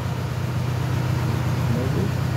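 Borehole drilling rig's engine running steadily with a low, even drone.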